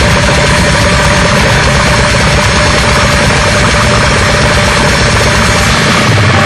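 Extreme metal music, loud and unbroken: heavily distorted guitars over very fast, machine-gun drumming.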